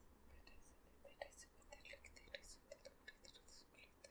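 Faint close-up whispering, in short soft breathy bursts.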